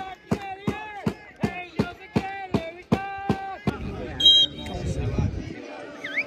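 Football fans chanting in rhythm, a sustained sung note on each of about three sharp beats a second, for the first three and a half seconds. Then a short high whistle blast, typical of a referee's whistle, over a low rumble on the microphone.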